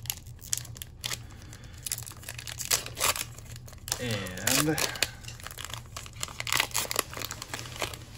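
Foil wrapper of a Japanese Pokémon card booster pack being torn open and crinkled by hand: dense, irregular crackling throughout. A man says a word about halfway through.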